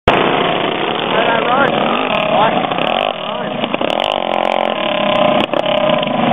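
Several dirt-track racing karts with small single-cylinder four-stroke engines running at racing speed past the track side, their engine notes rising and falling as they go by.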